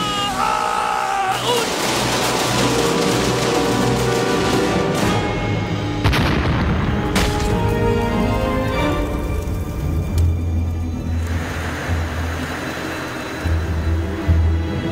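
Film soundtrack: dramatic music under a man's loud yell in the first second or so, followed by dense whooshing and booming impact effects with sharp hits about six and seven seconds in.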